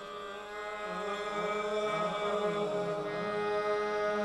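Qawwali singing: several voices sing long, winding melismatic lines over a steady held chord, most likely a harmonium, with no drumming. It grows louder about a second in.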